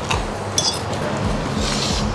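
A metal fork clinking and scraping against a ceramic plate during eating: a few short, light clinks about half a second in and another brief scrape near the end, over a steady low background hum.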